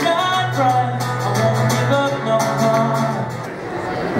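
A male singer sings live with an acoustic guitar over a light percussion beat, holding long notes. The music dips in level near the end.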